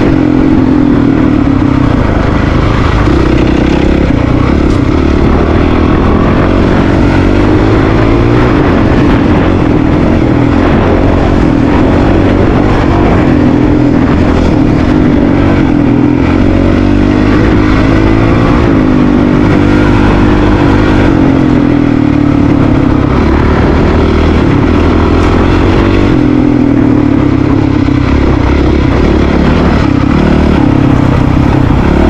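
Honda CRF450RL's single-cylinder four-stroke engine running as the dual-sport motorcycle is ridden, its note rising and falling with the throttle.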